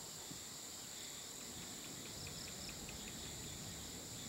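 Crickets and other evening insects chirring in a steady high-pitched drone, with a short run of faint chirps about halfway through over a low background rumble.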